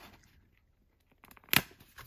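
A printed cardboard sleeve being pulled off a cardboard box: faint rustling, then a few crackles and one sharp crackle about one and a half seconds in.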